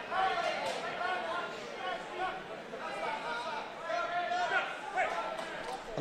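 Background voices in an indoor fight venue: overlapping shouting and calls from the crowd and corners, quieter than close-up speech.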